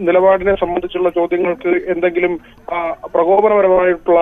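Speech only: a person talking in Malayalam, with brief pauses between phrases.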